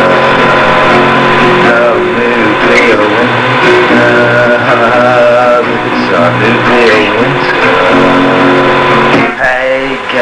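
A folk song: a voice singing over guitar accompaniment.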